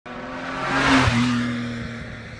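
Car pass-by sound effect over a title card: engine and tyre noise swell to a peak about a second in, the engine note drops slightly in pitch as it passes, then fades.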